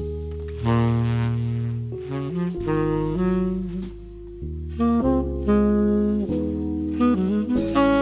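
TenorMadness custom tenor saxophone with an Otto Link Tone Edge slant mouthpiece playing a slow jazz ballad melody in long held notes, over sustained keyboard chords.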